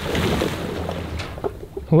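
Lake water splashing and churning from a heavy mooring anchor and buoy dropped off a boat's bow, fading as it settles. A low steady hum runs underneath, with a couple of light knocks partway through.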